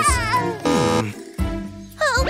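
Cartoon kitten's voice giving a falling, crying meow, over children's song music that drops quieter in the second half.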